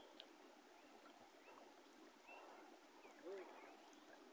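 Faint, steady rush of muddy river water around a man wading waist-deep while he feels for fish by hand, with a few short high chirps over it.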